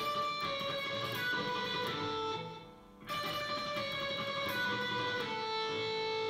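Electric guitar playing a tremolo-picked run on the high E string, walking down from the 10th fret through the 9th, 7th and 5th. The phrase is played twice, with a short break before the second pass.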